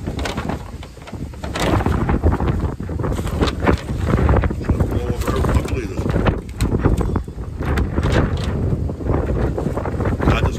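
Strong gusting wind buffeting the microphone: a heavy, uneven low rumble with crackling gusts, louder from about a second and a half in.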